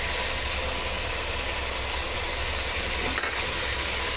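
Chicken frying in masala in a pan on a gas stove: a steady sizzle over a constant low hum, with one short clack about three seconds in.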